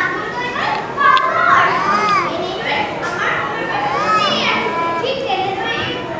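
Raised, high-pitched voices speaking and calling out, their pitch rising and falling, in a large hall.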